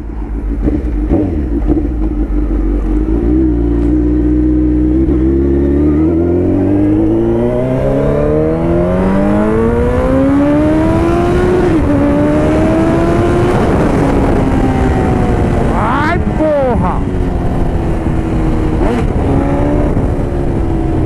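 Suzuki Hayabusa's inline four-cylinder engine breathing through an aftermarket stainless-steel exhaust tip, heard from the rider's seat. It runs steadily, then pulls up in revs for several seconds, dips briefly at a gear change about twelve seconds in, climbs again and settles into a steady cruise.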